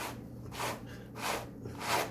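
Pair of hand wool carders brushing washed raw wool, the wire-toothed face of one card drawn down across the other in four quick scratchy strokes about two-thirds of a second apart.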